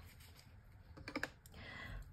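A quick run of light clicks about a second in, from paintbrushes being handled and knocking together, against a quiet room.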